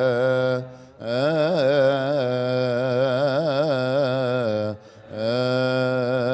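A man's voice chanting a long melismatic Coptic liturgical hymn, the pitch winding up and down in ornamented runs on sustained vowels, with short pauses for breath about a second in and again near the five-second mark.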